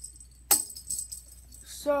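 Plastic-spoon catapult set in clay released: a sharp click about half a second in as the spoon springs forward and flings the cat toy, followed by a brief light jingling rattle as the toy lands, a short launch.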